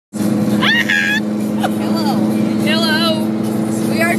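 Steady drone of a car's engine and road noise heard from inside the cabin while driving, with a woman's high-pitched excited voice and laughter about half a second in and again near three seconds.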